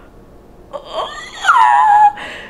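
A woman's excited, high-pitched whimpering: short rising squeaks just under a second in, then a loud, wavering cry that slides down in pitch near the end.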